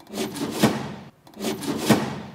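Two quick sliding, rubbing swishes, about a second and a quarter apart, each building to a peak and then fading away: the cover of a sheet-metal box being slid across and shut.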